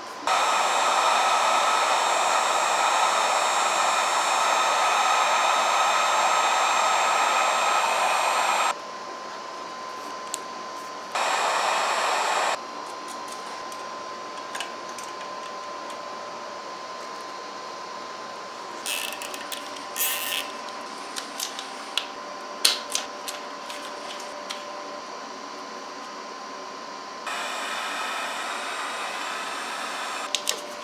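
Electric heat gun running in spells: one long blast of about eight seconds at the start, a short one of about a second, and another near the end, as it is used to heat the connections on the winch wiring. Between the spells come scattered light clicks and knocks of handling.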